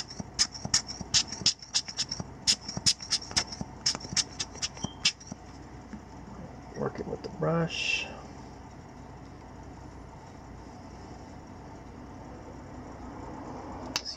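Rubber bulb air blower squeezed rapidly, a quick run of short puffs of air, about five a second, blowing dust off a camera lens ring; the puffs stop about five seconds in. Near the middle there is a brief voiced murmur.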